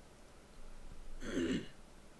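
A man clears his throat once, a short burst about a second in.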